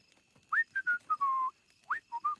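A man whistling a short tune by mouth: a quick upward swoop about half a second in, then a few falling notes, and another upward swoop near the end.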